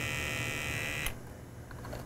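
Motorized pipette controller's small pump whirring steadily, then cutting off suddenly about a second in.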